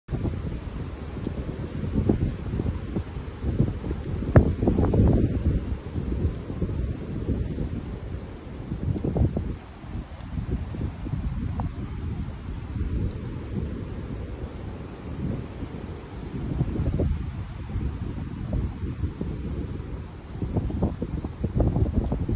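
Wind buffeting the microphone: a low rumble that swells and dies away in gusts.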